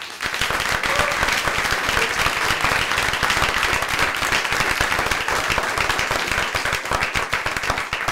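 Audience applauding steadily after a children's choir finishes a song.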